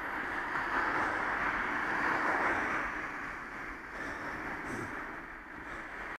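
Steady rush of wind on a bicycle-mounted camera's microphone mixed with tyre and road noise from riding on a wet road, swelling in the middle and easing off toward the end.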